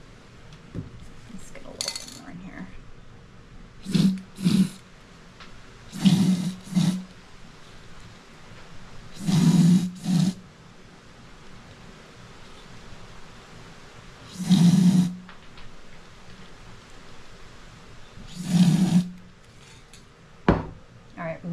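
Aerosol can of copper metallic spray paint sprayed into the opening of a hollow plastic ornament ball in short hisses every few seconds, some in quick pairs.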